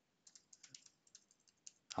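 Faint computer keyboard typing: a quick run of light keystrokes as a line of code is typed.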